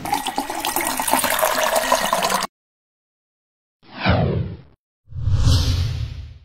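Splashing, gushing liquid sound effects for an animated logo: a dense rush of water that cuts off suddenly, then after a short silence a brief falling sweep and a second splash that fades away.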